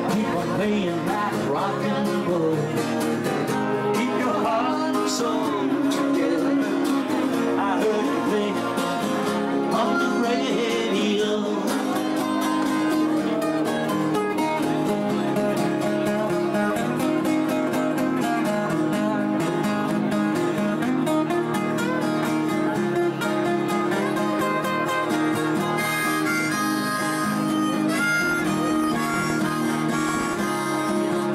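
Instrumental break in a live acoustic band performance: a harmonica plays a solo, bending notes, over strummed acoustic guitars.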